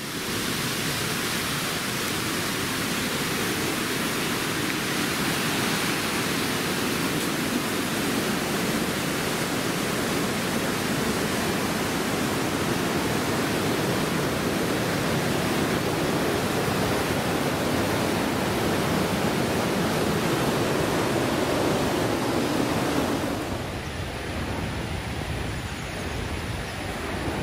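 River water rushing over rock rapids in a gorge, a steady, unbroken rush that turns a little quieter near the end.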